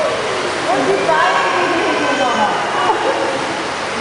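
Children's voices and calls in an indoor swimming pool, over a steady hiss of water.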